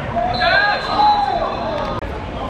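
Voices shouting across a football pitch as a player goes down in a tackle, loudest about a second in, with a thin high steady tone lasting under a second near the start.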